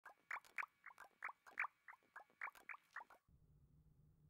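A quick run of about a dozen short, high squeaks, each dropping in pitch, about four a second, fading out about three seconds in; then a faint low hum.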